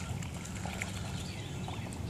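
Domestic ducks bathing and paddling in shallow lake water, with light splashing and a few faint short calls.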